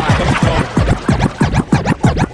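Hip hop track with DJ turntable scratching over the beat: a quick run of back-and-forth scratches, several a second.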